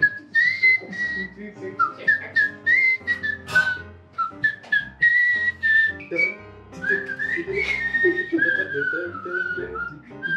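Background film music: a whistled melody sliding between notes, carried over low bass notes and keyboard chords.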